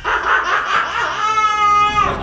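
Men laughing hard, with one voice drawn out into a long, high-pitched held laugh through the last second.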